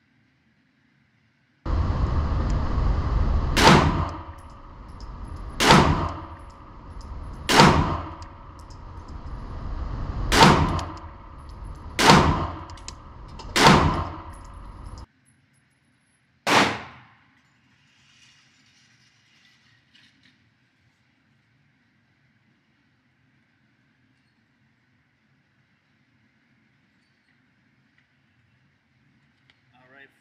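Canik TP9 Elite Combat Executive 9mm pistol firing 147-grain jacketed hollow points, slow aimed single shots about two seconds apart, each ringing off the range walls. The shots sit over a steady rushing noise that stops abruptly shortly before the last shot.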